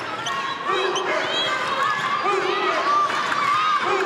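Basketball court sound: a ball dribbled on the hardwood floor and sneakers squeaking in short chirps, with voices from the arena around them.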